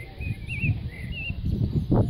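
A songbird singing a short phrase of wavy, warbled notes that stops about a second and a half in. Underneath is an uneven low rumble that gets louder near the end.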